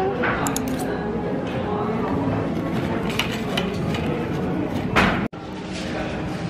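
A metal knife and fork clinking and scraping on a ceramic plate while cutting a pastry, over the chatter of a café. There is a brief hard break in the sound about five seconds in.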